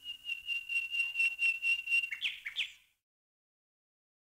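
A bird calling: a fast, even trill on one high note, followed by two or three quick downward-slurred notes. It cuts off suddenly about three seconds in.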